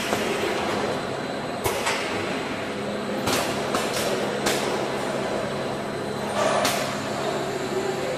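Aluminium-tray packaging machine running with a steady hum. About six short, sharp clacks and bursts of air hiss from its pneumatic cylinders come as the trays are stacked and the turning device tips the stack over.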